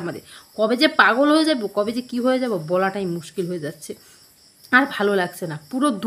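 A woman talking in Bengali, with a pause of about a second past the middle. A faint, steady, high-pitched tone runs underneath.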